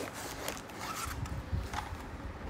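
Short scratching and rustling sounds with a few low bumps, like small objects or fabric being handled close to the microphone.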